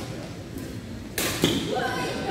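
A badminton racket hits a shuttlecock once, a sharp crack about one and a half seconds in, during a rally.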